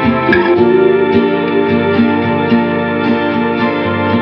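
Instrumental passage of a mellow lo-fi indie-folk song, led by guitar over sustained chords, with one note sliding upward near the start.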